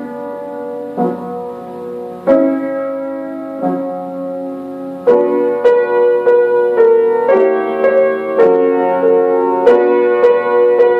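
Grand piano played by two players at one keyboard. Over the first five seconds a few chords are struck and left to ring, about one every second or so. From about five seconds in, a brisker tune follows, with notes struck roughly every half second.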